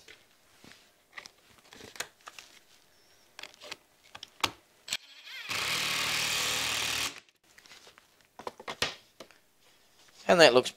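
Cordless drill-driver running steadily for about a second and a half, driving a wood screw through a wooden batten into a plywood panel, then stopping suddenly. Light knocks and clicks from handling the wood and drill come before and after.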